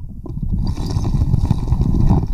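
Muffled underwater churning and rumbling as silt is fanned off a creek bed, heard from a submerged camera, with scattered sharp clicks and knocks.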